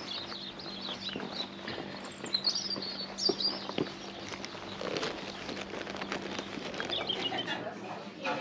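Small birds chirping in high, quick phrases, loudest a couple of seconds in and again near the end, over footsteps on tarmac and a faint steady low hum.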